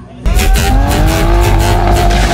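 A car doing a burnout: the engine is held at high revs with the tyres spinning. It starts abruptly about a quarter of a second in, and the engine note rises slowly.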